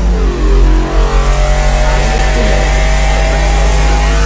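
Loud, engine-like sound effect over deep bass: a stack of tones glides in pitch during the first second, then holds steady.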